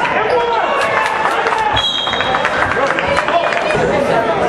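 Spectators in a school gym talking over a basketball game, with the ball bouncing, and a referee's whistle blown once, a steady shrill note lasting just under a second about two seconds in, stopping play for a foul.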